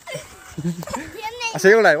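Children's voices: soft talk, then a loud, high, wavering voice near the end.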